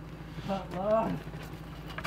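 A person's voice: one short spoken word or call about half a second in, over low steady background noise.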